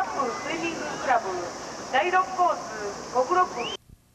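Indistinct voices of people at a swimming pool, calling and talking over a steady hiss. The sound cuts off abruptly near the end, leaving near silence.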